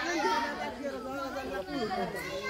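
Chatter of several people talking at once, voices overlapping at a moderate level.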